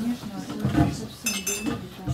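Indistinct voices of several people talking in a room, with a brief high clinking ring a little over a second in.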